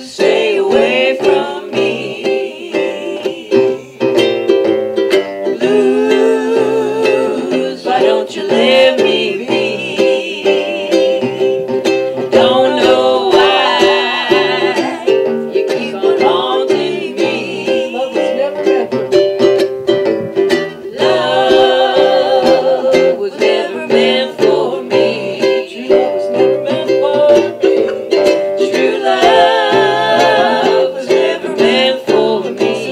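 Instrumental break of an old-time string band: banjo and ukulele playing together under a lead melody that wavers in pitch.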